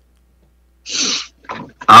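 Almost a second of silence, then a short breathy exhale and a faint mouth sound from a man about to answer, with his voice starting at the very end.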